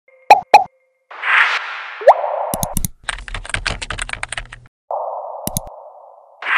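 Sound effects of a news channel's logo intro: two sharp pops, a whoosh ending in a quick rising zip, about a second and a half of rapid typing-like clicks over a low rumble, then a second whoosh.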